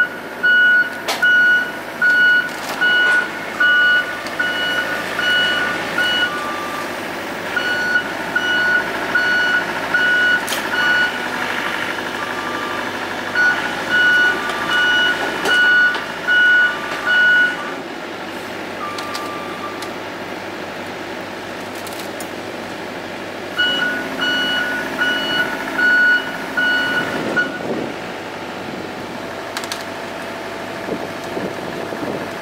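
A backup alarm beeping steadily in four runs that stop and restart, over the steady running of a John Deere 85G excavator's diesel engine.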